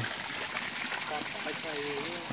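Steady rush of hot-spring water flowing and spraying into a thermal pool, with faint voices in the background.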